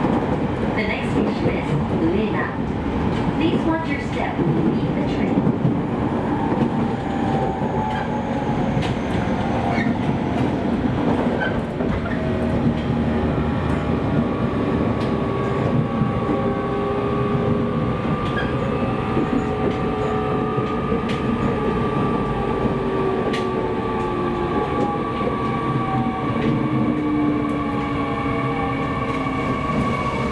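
JR East E501 series electric train running, heard from inside the car: steady wheel and rail noise with clicks over rail joints, and a motor whine of several tones that falls slowly in pitch through the second half as the train slows for the next station.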